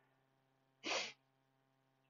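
A single short, soft breath about a second in, a quick intake by a man pausing in his talk; otherwise near silence with a faint low electrical hum.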